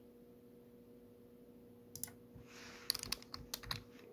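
Computer keyboard keystrokes editing a text field: a single tap about two seconds in, then a quick run of several keystrokes near the end, over a faint steady hum.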